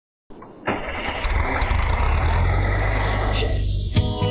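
A car engine starting about half a second in and then running steadily with a deep rumble, which drops away just before the end.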